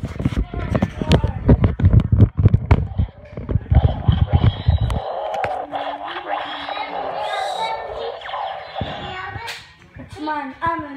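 Handling noise from a camera being carried and swung: a rapid, irregular run of thumps and rubbing on the microphone that stops suddenly about halfway through. After that come muffled voices.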